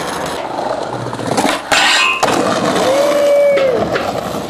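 Skateboard wheels rolling and clattering on concrete, with several sharp knocks of the board, one loud hit about two seconds in, after a skater's fall on a handrail. Near the end a short held, whistle-like tone sounds for under a second.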